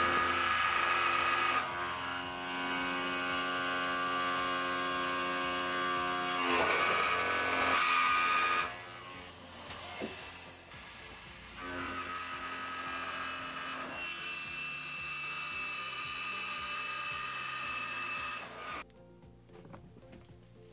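Tormach PCNC 770 CNC mill cutting steel plate: a steady, pitched machine whine made of several tones that shifts to a new pitch every few seconds. It is louder for the first nine seconds, quieter after that, and drops off sharply about a second before the end.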